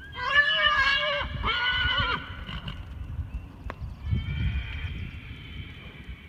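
Horse whinnying: two loud calls in the first two seconds, then a fainter, higher call about four seconds in, over dull thuds of hooves on dirt.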